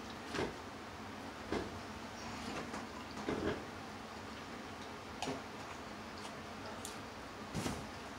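Close-up eating sounds: a person chewing deep-fried seafood, heard as about five short, sharp crunches or clicks spaced a second or two apart.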